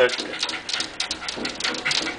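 A pet dog whimpering and panting, worked up at a squirrel it cannot reach, with a run of quick clicks and taps.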